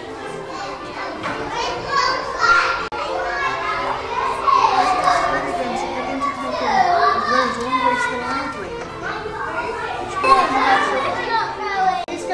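Young children's voices, several at once, chattering and calling out as they play, with a momentary dropout just before three seconds in.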